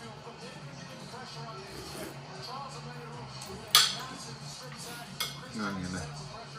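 Metal fork and spoon clinking against a ceramic plate while eating: one sharp clink a little under four seconds in and another just after five seconds, over a television playing in the background.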